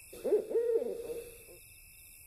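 Owl hooting: a few wavering hoots in the first second and a half that fade away, over a faint steady high hiss of night ambience.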